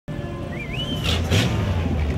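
Low, steady engine rumble of antique and classic cars driving slowly past. A short wavering whistle-like tone rises about half a second in, and two brief hissy bursts follow just after a second.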